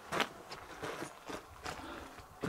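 Faint, irregular crunching footsteps, about half a dozen short steps over two seconds, the first the loudest.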